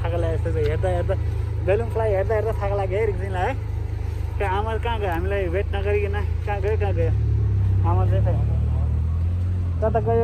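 A small child's high voice babbling and vocalizing in short wavering runs with no clear words, over a steady low rumble.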